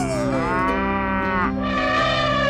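Cow mooing: two long moos one after the other, the first falling in pitch and ending about one and a half seconds in, the second starting right after. Steady background music plays underneath.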